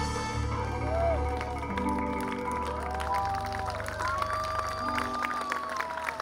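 A live Latin band holding the final notes of a song, with long gliding melody notes over a bass that stops about five seconds in. Scattered audience clapping runs through the ending.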